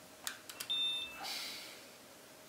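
Canon Speedlite 600EX-RT handled and switched on: a few sharp clicks, then a short, steady, high electronic tone of about a third of a second. The repaired flash is powering up.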